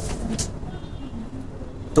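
Steady low background rumble of room noise during a short pause in a man's speech.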